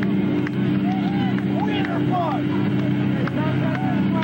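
Steady low hum from the band's amplifiers between songs, with scattered voices and short shouts from the crowd over it.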